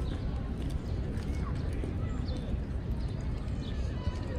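Outdoor park ambience: a steady low rumble, distant voices of people on the paths, and a few short bird chirps.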